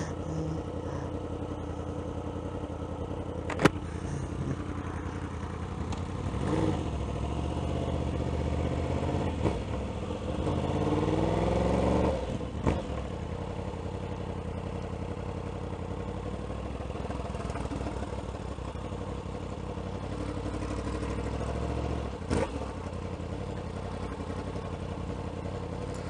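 2016 Yamaha R1's inline-four engine running at low speed in stop-and-go traffic, heard from on the bike. About eight seconds in the revs climb steadily for some four seconds, then drop back. There is a single sharp click a few seconds in.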